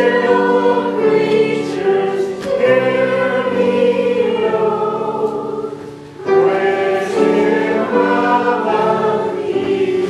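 Church choir singing in several parts over steady held chords, with a brief break between phrases about six seconds in.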